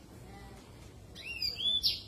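Yellow-fronted canary (Mozambique canary) singing: a quick run of about three high, sweeping whistled notes a little past halfway, the last one the loudest.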